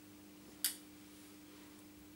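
One sharp click from a flat iron being handled, over a faint steady hum.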